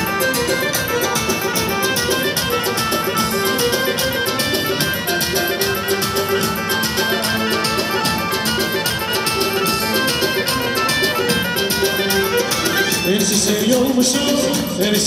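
Live wedding band playing Azerbaijani dance music: a melody in violin-like tones over a steady, even drum beat.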